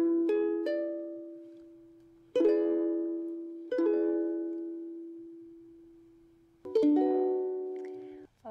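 Ukulele playing an E7 chord. The notes are picked one after another near the start, then the chord is strummed three more times, each left to ring and slowly fade.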